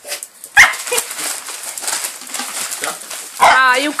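A small dog barks once, sharply, about half a second in, amid the rustle and tearing of Christmas wrapping paper being pulled apart by the dogs.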